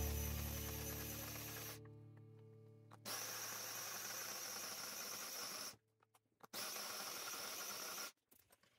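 A held musical chord fades out over the first few seconds. Then a small press-top electric food chopper runs in two bursts, about two and a half seconds and then about a second and a half, with a short stop between, mincing garlic and onion.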